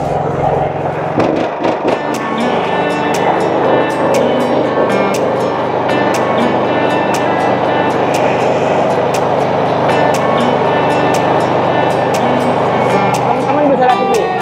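Background music with a steady beat over the Firman SFE460 four-stroke 458 cc engine running steadily under load, driving a fishing boat's long-shaft propeller.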